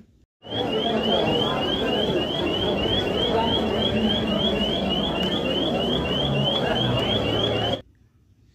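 Store electronic security alarm going off: a high rising chirp repeated about three times a second, over steady crowd hubbub. It starts and stops abruptly.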